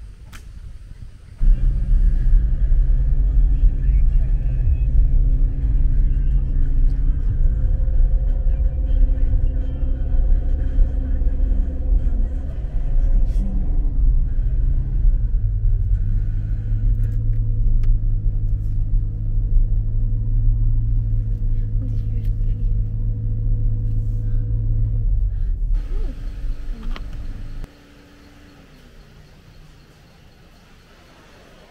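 Low rumble of a vehicle engine heard from on board, steady with a shift in pitch about halfway through, cutting off suddenly near the end.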